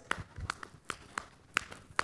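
A woman beating out a rhythm on her legs as percussion: a series of light, sharp slaps, about three a second.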